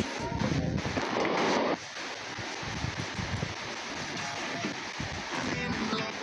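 Spirit box (S-box ghost scanner) sweeping through radio stations: a steady hiss of static with brief chopped fragments of voices and music, and a louder rush of noise about a second in.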